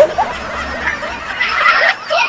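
A woman laughing in breathy giggles that get louder about one and a half seconds in.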